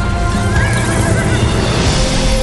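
A horse whinnies, a wavering call from about half a second in, with hoofbeats under trailer score music.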